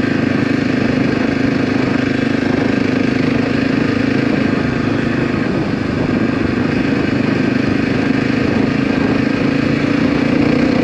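Dirt bike engine running steadily while the motorcycle is ridden along a dirt road at a constant pace, the engine note holding even throughout.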